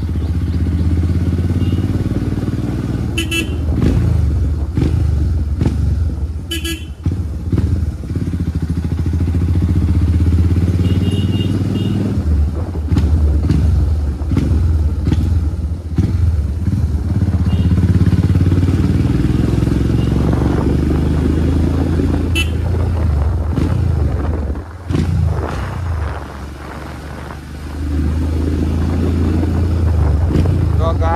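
Royal Enfield Himalayan Scram 411's single-cylinder engine running as the motorcycle is ridden, a steady low rumble that eases for a couple of seconds late on. A few short horn toots sound in the first several seconds.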